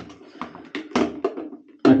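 Plastic hairdryer clicking and knocking against its plastic wall-mounted holder several times as it is worked back into place.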